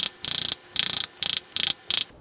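A wooden spoon rapidly whacking the rind of a halved pomegranate held over a glass bowl, knocking the seeds out. The whacks come in short clattering runs, about two to three a second.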